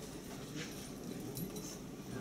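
Faint hall background of distant, indistinct voices, with scattered light rustling and shuffling as people gather bags and move between the seats.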